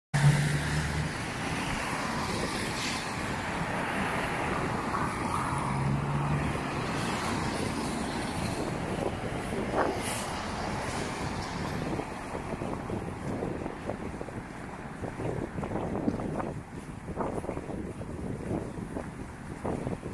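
Road traffic on a snowy city street: a steady wash of car noise, with a brief low engine hum at the start and again about six seconds in, and irregular soft knocks in the second half.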